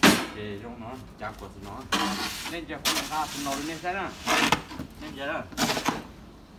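A man talking, with a sharp knock right at the start and a few short bursts of hiss-like noise between his words.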